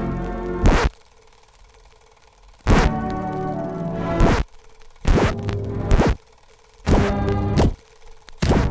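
A series of about seven loud whacks of blows landing, unevenly spaced, with bursts of music that start and stop around them and quiet gaps in between.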